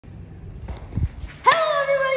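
Low rumbling handling noise with a few soft thumps, then about one and a half seconds in a voice breaks in suddenly with a long, drawn-out call that leads into speech.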